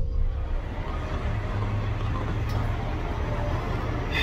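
Steady motor-vehicle noise: a low rumble with an even hiss over it.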